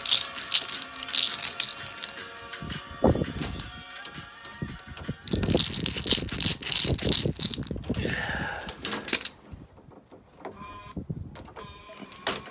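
Metal clicking and rattling as a door lock cylinder is worked loose and pulled out of the door, with music playing in the background.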